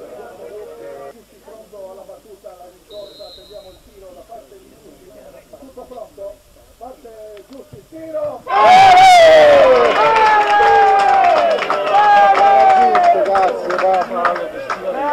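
Faint scattered calls, then about eight and a half seconds in several men's voices break into loud shouting together and keep on shouting. This is the reaction of players and spectators on the pitch to a goalmouth incident.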